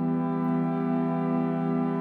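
A pipe-organ chord held steadily: Hauptwerk sample recordings of the 1877 Father Willis organ of Salisbury Cathedral, played back through speakers.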